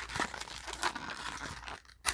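Foil Pokémon booster pack wrappers crinkling and a clear plastic blister insert crackling as the packs are handled and pulled out of it, with a few sharper clicks; the rustling dies away near the end.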